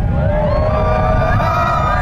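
Loud, low rumble of a Starship Super Heavy booster's 33 Raptor engines climbing after launch, heard from a distance. High wavering, gliding tones sound over it.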